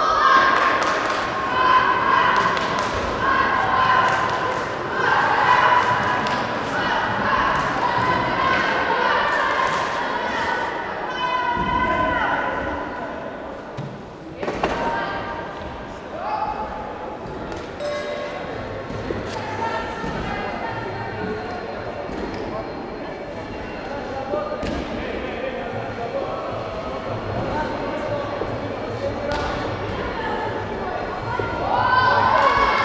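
Voices and chatter echoing in a large sports hall, loudest in the first half, with scattered thuds and knocks.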